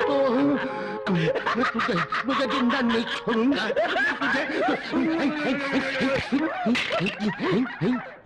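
A man laughing wildly in rapid, repeated bursts that rise and fall in pitch throughout.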